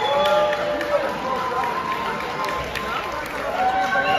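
Indistinct voices talking over one another: the background conversation of a restaurant dining room.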